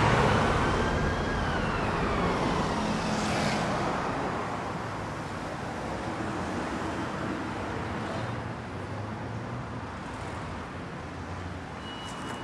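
Street traffic: a car passes close by at the start, its noise loudest then fading over the next few seconds, while a high whine rises slightly and then falls in pitch. Then steady traffic noise.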